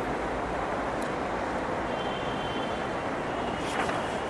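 Steady background noise with no voice, spread from low to high, with a faint thin high whine for about a second and a half around the middle.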